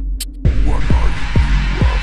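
Minimal techno track. Hi-hat ticks play over a steady sub-bass drone, then about half a second in a bright synth wash comes in with a four-on-the-floor kick drum, a little over two kicks a second, each kick dropping in pitch.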